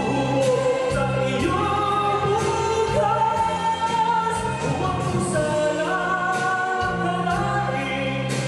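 A man singing a slow ballad into a handheld microphone with long held notes, over backing music with sustained bass notes.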